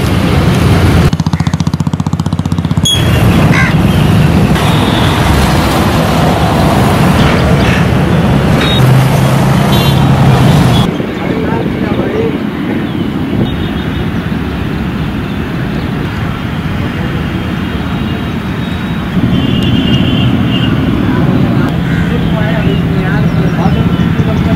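Loud outdoor background noise of road traffic with indistinct voices. The sound changes abruptly about halfway through.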